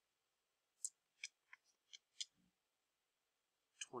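Near silence broken by a handful of short, faint clicks, mostly in the first half, with one more near the end.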